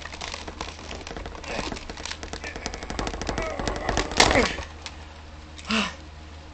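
Rapid plastic clicking and rattling as a tie holding a toy blaster in its packaging is yanked and worked at, the clicks coming thicker and building to a loud burst about four seconds in.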